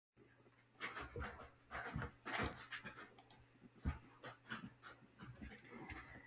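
Faint, irregular short puffs of noise picked up by an open microphone, about a dozen over a few seconds.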